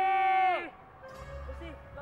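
A long shouted call through cupped hands, a young man's voice held on one high pitch that drops away and stops less than a second in. Faint background music and a few quieter voice sounds follow.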